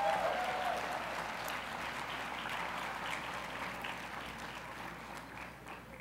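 Banquet audience applauding an announcement, the clapping slowly dying away.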